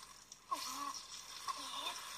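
Anime episode soundtrack playing at low level: two short sounds about a second apart, each falling in pitch.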